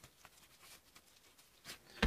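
Near silence: room tone with a few faint short taps, one a little louder near the end.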